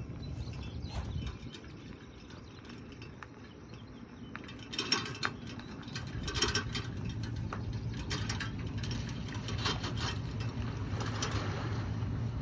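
A pickup truck backing an empty metal boat trailer down a concrete ramp: the trailer rattles and clanks in short clusters from about four seconds in, over the truck's low, steady engine, which grows a little louder as it comes closer.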